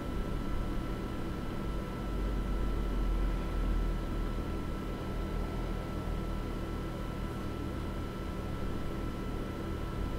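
Steady room noise: a low hum and an even hiss, with a faint steady high tone above them.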